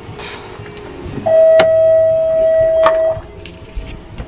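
A single loud, steady beep about two seconds long, starting just over a second in, with two sharp clicks during it.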